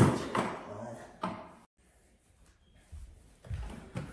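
A sharp knock of furniture being bumped, a chair against a table, followed by a man's brief exclamations. After a sudden cut, low thuds of furniture and movement come near the end.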